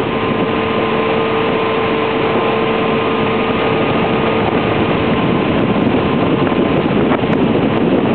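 A small motorboat's engine running steadily under way, with a steady hum that fades about halfway through, over a rush of wind on the microphone and water.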